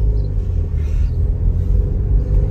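Low, steady rumble of a car's engine and tyres heard from inside the cabin while driving along a road.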